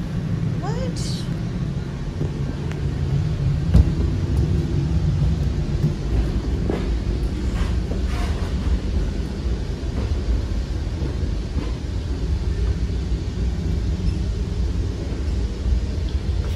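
Metra commuter train running, heard from inside a bilevel passenger car: a steady low rumble, with one sharp knock about four seconds in.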